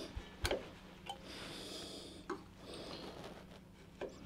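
A chisel paring a small flat onto a turned wooden blank by hand: faint scraping strokes with a few light clicks, over a low steady hum.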